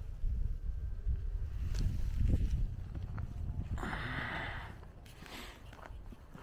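Footsteps of a person walking on a frosty paved path, over a steady low rumble on a handheld camera's built-in microphone. A short hiss comes about four seconds in.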